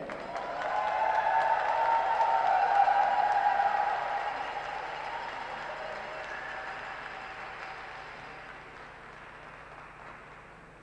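Audience applauding in a rink, swelling within the first second and fading away gradually over the rest.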